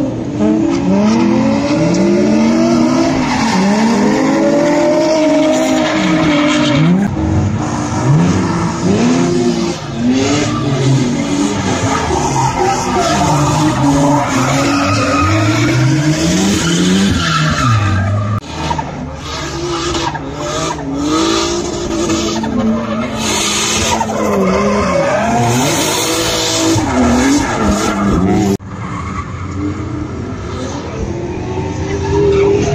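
Drift cars sliding on asphalt: engines revving up and down in quick repeated swells as the throttle is worked, over the hiss and squeal of spinning tyres. The sound drops suddenly to a quieter stretch near the end.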